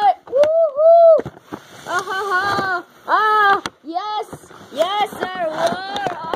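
A high-pitched voice making wordless cries and calls, a string of short sounds that rise and fall in pitch, the longest held about a second near the start.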